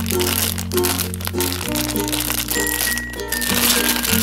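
Background music with sustained notes over a steady bass, and the crinkling of a clear plastic bag being handled as a diecast model airliner is unwrapped.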